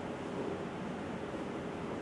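Steady, featureless background hiss of room noise, with no distinct knocks, squeaks or voices.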